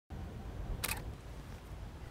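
A single DSLR camera shutter release click about a second in, over a low background rumble.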